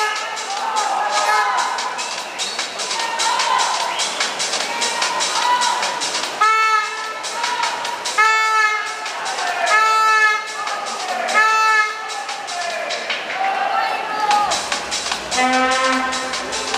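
Spectators cheering on swimmers in an echoing indoor pool hall: fast clapping throughout, and from about six seconds in, loud shouts repeated about every second and a half to two seconds, in time with the race.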